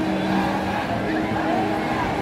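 Live amplified concert sound at an outdoor show: music from the stage PA with a few held low notes, mixed with the voices of a dense crowd, loud and continuous.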